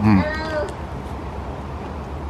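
A person's short, closed-mouth "mm" of enjoyment while eating, lasting about half a second. A steady low background rumble follows.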